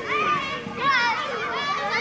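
Young children's high-pitched shouts and excited voices overlapping as they run about at play.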